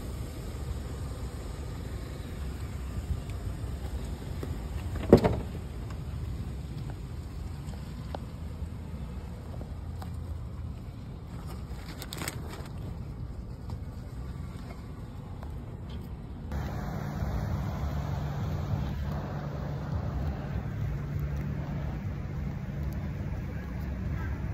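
Steady low hum of vehicles and engines, with one sharp knock about five seconds in. After about sixteen seconds a steady low engine drone sets in.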